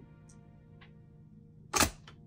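A faint steady hum, with one short, sharp, loud sound near the end.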